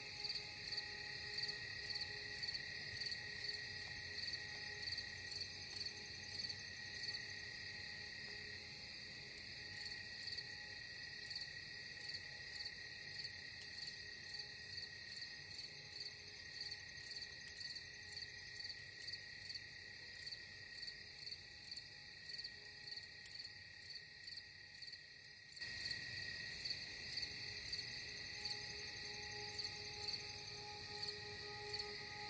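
Crickets chirping in a steady pulsing rhythm, with a soft steady tone held underneath.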